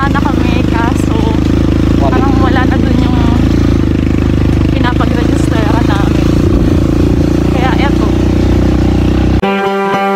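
Motorcycle engine running steadily under way, with voices talking over it. About nine seconds in, the sound cuts abruptly to strummed guitar music.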